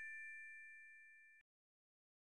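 Fading tail of a bright ding-like chime sound effect: a few high ringing tones die away steadily and cut off abruptly about a second and a half in.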